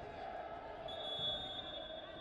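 Sports-hall ambience around a wrestling bout: a steady murmur of distant voices in a large reverberant hall. A thin high-pitched tone starts about a second in and lasts just over a second.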